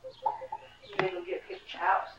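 Young toddler babbling in short wordless vocal sounds, with one sharp click about a second in and a louder vocal sound near the end.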